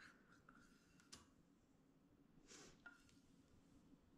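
Near silence, with faint scraping and a light click as a spatula scrapes peanut butter out of a metal measuring cup.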